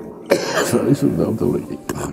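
A person coughing: one harsh, breathy burst lasting about a second, followed by a short click near the end.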